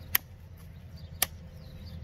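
Two sharp knocks about a second apart: the small Cold Steel Pendleton Mini Hunter fixed-blade knife chopping into a thin hand-held branch, over a low steady hum.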